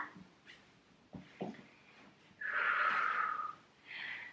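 A woman's audible breath, about a second long, a little past the middle, preceded by two faint clicks.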